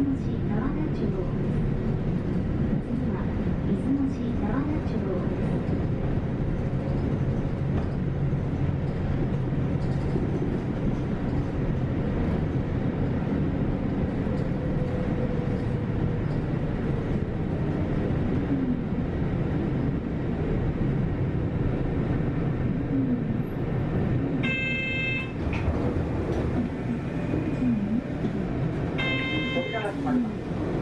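City bus heard from inside the cabin while driving: steady engine and road rumble. A short ringing tone sounds twice near the end.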